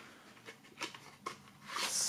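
CD jewel case being slid into a cardboard slipcase, handled by hand: a few faint light clicks, then a short scrape that builds near the end.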